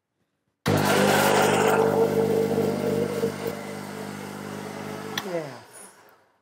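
Countertop electric blender running on red peppers. It starts abruptly just under a second in, rougher and louder for about the first second, then runs steadily. It is switched off about five seconds in with a click, and the motor winds down with a falling pitch.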